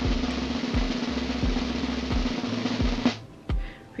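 Snare drum roll sound effect over background music with a steady beat, building suspense while a giveaway winner is drawn; the roll cuts off abruptly about three seconds in.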